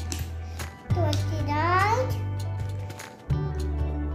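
A child's voice calls out a word, likely the next number in the count, about a second in, over background music with steady bass notes.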